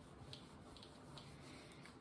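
Near silence, with faint rubbing from a cloth wiping a whiteboard and a few soft, brief scuffs.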